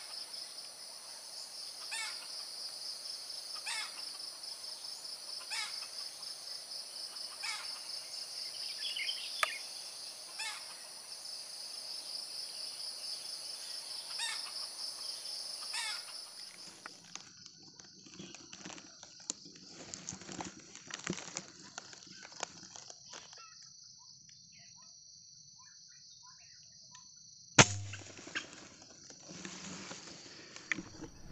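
Steady high-pitched insect drone with short sharp chirps repeating about every two seconds, which cuts off about halfway. Then scattered clicks and rustling of the rifle being handled, and near the end a single sharp, loud shot from the hunter's rifle fired at a red junglefowl.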